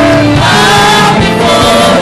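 Gospel choir singing a praise song, loud and steady.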